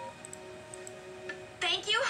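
Closing held notes of a children's cartoon song, played from a screen's speakers, with a few faint ticks. A cartoon girl's voice cuts in near the end.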